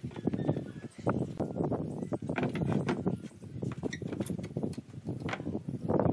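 Steel bar clamps being loosened, lifted off a glued-up board panel and set down on a wooden workbench: irregular knocks and clatter of metal on wood.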